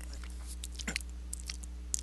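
Low steady hum with a few faint, scattered clicks.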